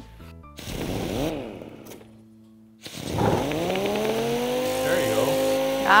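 Handheld electric orbital sander being worked on a wooden edge. About a second in it gives a short run that rises and falls in pitch. After a brief pause the motor is triggered again, winds up in pitch and settles into a steady whine.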